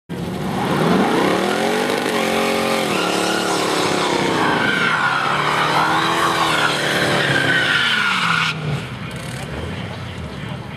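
A hot rod doing a drag-strip burnout: the engine revs up and down twice while the spinning rear tyres squeal. It stops abruptly about eight and a half seconds in.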